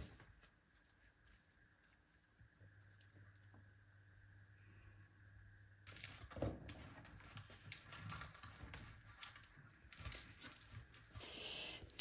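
Near silence with a faint low hum at first, then from about halfway faint rustling and soft taps of hands handling salad leaves, tomatoes and avocado on a tortilla on a plastic cutting board.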